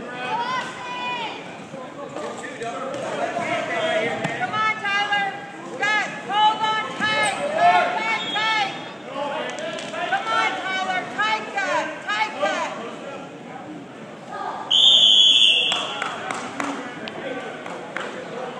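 Spectators' voices calling out, the words unclear. About fifteen seconds in, a loud, high electronic buzzer sounds for about a second.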